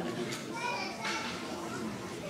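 Overlapping chatter of children's and adults' voices, with no single speaker standing out.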